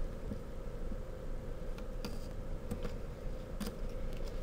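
Faint handling of black masking tape on a plastic transparency sheet: a few soft clicks and rustles as strips are pressed down, over a steady low hum.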